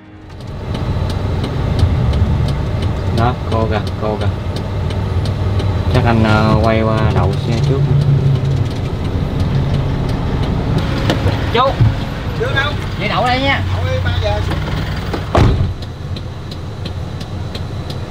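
Truck engine running steadily in the cab as it drives slowly, heard from inside, with indistinct voices over it. There is a brief sharp knock near the end, after which the rumble is lower.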